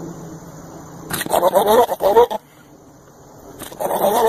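A goat bleating loudly: one wavering bleat about a second in, and a second bleat starting just before the end.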